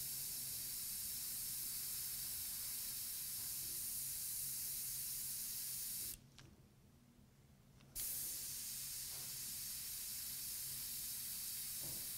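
Airbrush spraying paint with a steady high hiss. The hiss cuts off suddenly about halfway through as the trigger is let go, and starts again about two seconds later.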